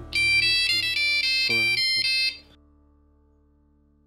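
Mobile phone ringtone: a short high-pitched electronic melody of quick stepping notes, stopping after about two seconds, over soft background music.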